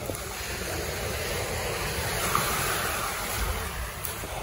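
Small waves breaking and washing up a sand-and-pebble beach in a steady rush, with a low rumble of wind on the microphone.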